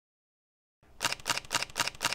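Camera shutter firing in a rapid continuous-drive burst of sharp clicks, about seven a second, starting a little under a second in.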